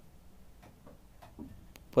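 A near-quiet pause broken by a few faint scattered clicks, with a sharper click just before the end.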